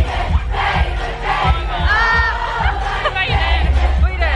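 Loud pop music over a club sound system with a steady bass beat, and a crowd of voices shouting and singing along.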